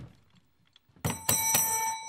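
Brass desk service bell on a hotel reception counter, struck several times in quick succession starting about a second in, each strike ringing on.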